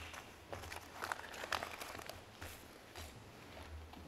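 Faint hall room tone with a low hum, broken by scattered soft rustles and small clicks as a seated audience shifts about.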